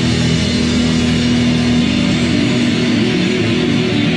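Amplified electric guitars played loud and distorted in a punk rock band, with held notes and chords ringing through the room.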